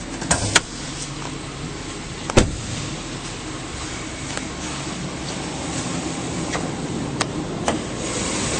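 Hummer H3's 5.3-litre V8 idling steadily, running smooth and quiet. A door shuts with a sharp clunk about two and a half seconds in, and a few light clicks near the end come as the hood is opened.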